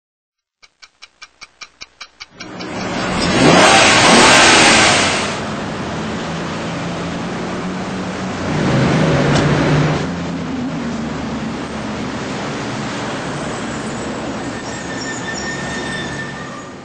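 City traffic: a run of about ten quick ticks, then a car passing with a loud rush that rises and falls, followed by steady traffic noise and a second vehicle passing. Faint steady tones come in near the end.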